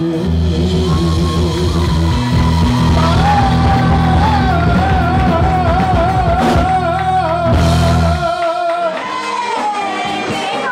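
Live band playing rock-style music with singing over bass guitar and drums; a long sung note with vibrato is held through the middle, and the bass cuts out about eight seconds in.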